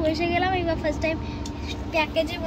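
Steady low rumble of a moving Indian Railways passenger coach, heard from inside, under a voice talking.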